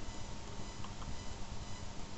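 Steady room tone: low microphone hiss with a faint hum, and a couple of faint clicks about a second in.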